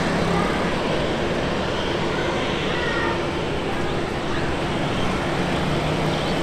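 Boeing 737-700 BBJ's CFM56-7 jet engines running at low taxi power: a steady rumble with a faint low hum in it. A few faint short chirps sound over it.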